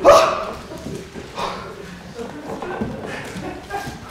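A loud bark-like vocal cry from a performer right at the start, followed by a few much quieter short vocal sounds.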